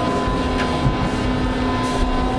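Elevator car travelling up between floors: a steady low rumble with a constant hum.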